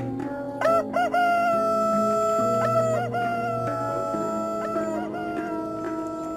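Music: a lead line slides up into a long held note over steady sustained chords, with short pitch bends at its start and again about three seconds in.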